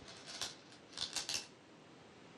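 Go stones clinking and rattling in the bowl as a player's fingers pick one out: two short bursts of clatter, about half a second and about a second in.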